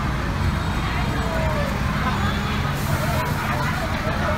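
Fire truck's diesel engine running steadily at low speed as the truck pulls forward, with people talking in the background. A hiss starts near the end.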